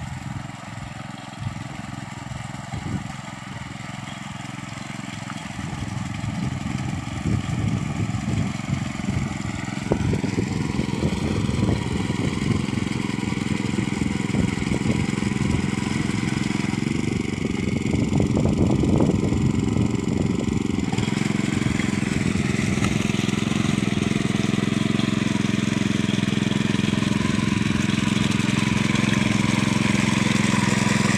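Walk-behind power tiller's engine running under load as it puddles a flooded paddy field, getting steadily louder as the machine comes close.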